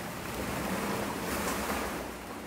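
A steady rushing noise with no distinct knocks or voices, like air or handling noise on a phone's microphone as it is moved.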